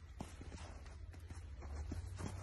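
Faint outdoor background: a steady low rumble with a few soft scattered clicks.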